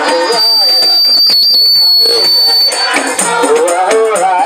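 Singing over a loudspeaker to frame drums and a steady rattling shake. About half a second in, a steady high whistle-like tone comes in and holds for about two and a half seconds while the voice drops back, then the singing returns.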